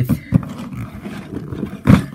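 Rumbling handling noise from a camera being gripped and moved, rubbing against the microphone, with a loud thump near the end.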